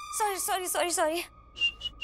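Whistling: four quick notes that each slide downward, followed by a few short high pips.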